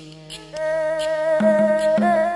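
Xẩm folk music: a sung note held low by an elderly woman's voice trails off, then about half a second in a đàn nhị (two-string bowed fiddle) comes in louder with a long, steady high note, joined by a lower note near the end. Faint light clicks run underneath.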